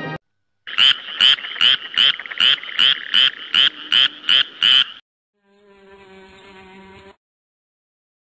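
A fast run of about eleven loud, raspy, frog-like croaks, close to three a second, cut off about five seconds in, followed by a fainter steady low hum.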